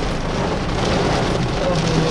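Heavy rain falling steadily on a car's roof and windows, heard from inside the moving car's cabin, with the car's road noise underneath.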